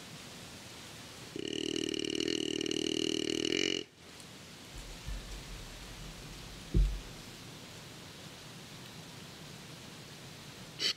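Deer grunt call blown by the hunter: one long, rasping, buzzing grunt of about two and a half seconds, imitating a buck, to which the buck does not respond. A short low thump follows a few seconds later.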